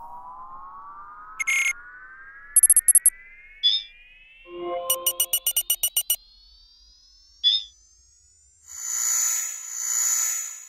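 Synthesized computer-interface sound effects: an electronic tone glides slowly upward in pitch throughout. It is broken by short beeps and a quick run of about ten rapid beeps about five seconds in. A loud electronic buzzing swell comes near the end.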